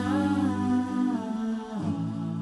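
Wordless vocal music: voices humming long held notes that shift in pitch. The notes slide down together near the end and settle on a new chord.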